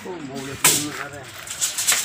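Hammer blows on a wooden roof frame: one sharp knock about half a second in, then several quick ones near the end, with people talking over them.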